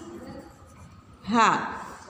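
Pencil scratching on paper as a short word is written by hand, faint and even.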